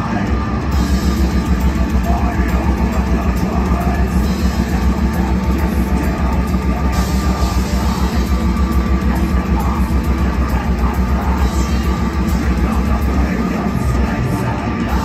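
Live rock band playing loud, with electric guitar and bass guitar over a fast, steady beat.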